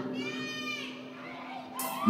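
A faint, high-pitched voice call that rises and then falls in pitch, over a steady low hum, with a brief burst of noise near the end.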